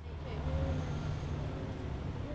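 Bus running on the road, heard from inside the passenger cabin: a steady low rumble of engine and road noise that starts suddenly at the cut.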